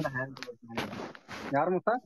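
Voices on an online audio call, with a short burst of harsh noise about half a second in that lasts under a second, before a brief "yeah".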